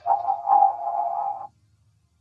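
A held chord from audio run through a 'chorded' pitch effect. It cuts off suddenly about a second and a half in, leaving silence.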